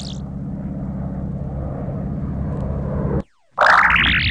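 A steady propeller-plane engine sound effect drones for about three seconds and cuts off suddenly. It is framed by rising, warbling swoosh effects: one just ending as it begins, and another, the loudest sound, starting near the end.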